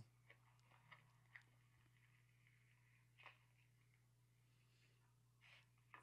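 Near silence with a few faint clicks: the plastic retaining clips of a Pontiac Torrent's front door trim panel popping loose as the panel is pried off.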